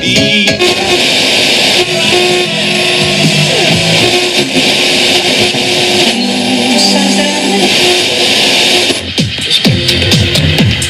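Toshiba RT 6036 boombox radio playing a music broadcast with guitar through its speakers while its dial is turned. Near the end the sound dips briefly and changes to different music as the tuning moves to another station.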